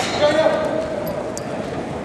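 Game sounds in a large indoor lacrosse arena: a held shout from the players in the first half, over echoing hall noise. There is a sharp knock right at the start and a faint click around the middle.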